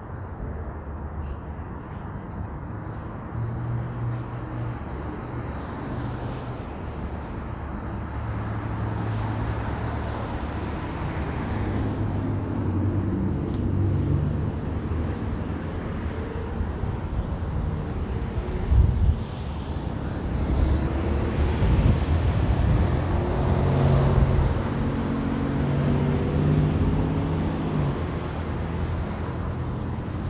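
City street traffic on wet pavement: cars driving past with engines running and tyres hissing, swelling and fading as each passes. A brief low thump about two-thirds of the way through is the loudest moment.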